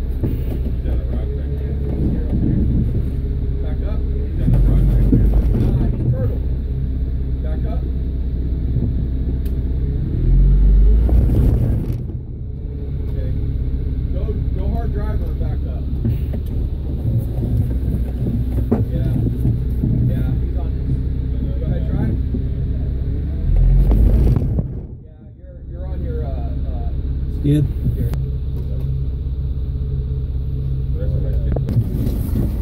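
Off-road vehicle's engine running steadily while rock crawling, with three throttle surges, about four, ten and twenty-four seconds in, and a short drop in level after the last one.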